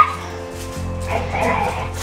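Dogs barking faintly in the background, loosest near the middle, over a soft, steady background music bed.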